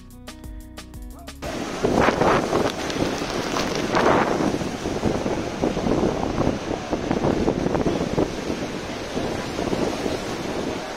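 Music for about the first second and a half, then gusty wind on the microphone over the roar of the American Falls at Niagara and the churning river water below them, with the loudest gusts about two and four seconds in.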